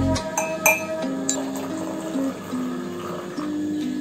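Background music with a simple stepped melody, over which a metal spoon clinks a few times against a ceramic mug within the first second and a half as powder is tapped in.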